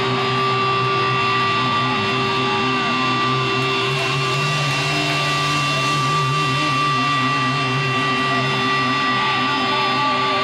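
Electric guitar feedback and held notes ringing through the amplifiers: a steady high whine over wavering low notes, with no strumming.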